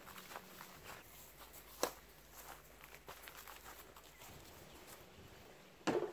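Footsteps on grass, a run of light irregular steps, with a louder thump near the end.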